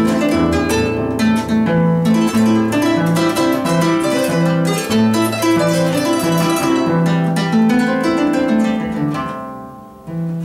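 Peruvian Andean harp played solo: a plucked melody over a lower bass line. Near the end the notes thin out and die away briefly.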